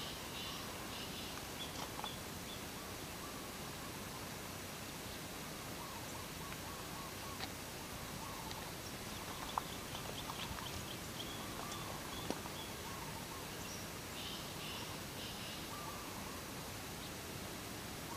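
Quiet outdoor background: a steady low hiss with faint, scattered bird chirps and a few small clicks as the vines and leaves are handled.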